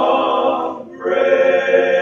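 Men's barbershop chorus singing a cappella in close harmony: a held chord breaks off just before a second in, and after a brief breath a new chord comes in and is held.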